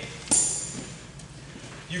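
A single sharp slap about a third of a second in, fading out over half a second, then low room noise.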